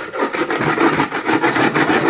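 A block of ice, held in a towel, scraped with quick back-and-forth strokes across a metal grater into a stainless steel bowl, shaving it.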